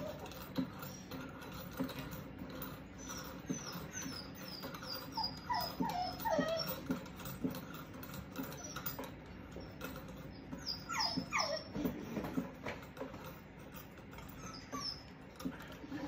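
A dog whining: several runs of short, high squeals, each falling in pitch, over light clicks and knocks.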